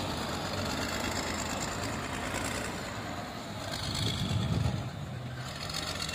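Motor grader's diesel engine running steadily. A low rumble swells about four seconds in and fades again.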